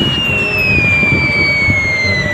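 A long whistle falling slowly and steadily in pitch, the falling-bomb sound effect, over the rumble of passing road traffic.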